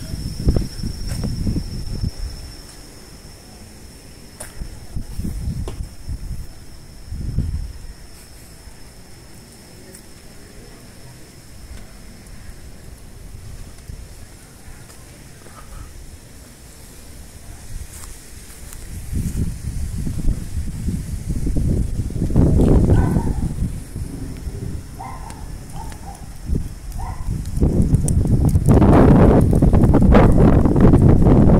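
Gusting storm wind buffeting the microphone, in strong gusts at the start, easing off for a while, then building again from about two-thirds of the way in to its loudest near the end. These are the gusts of an approaching windstorm.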